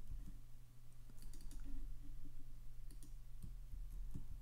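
Faint clicks of a computer mouse and keyboard as keyframes are selected, copied and pasted, a cluster about a second in and a few more near the end, over a steady low electrical hum.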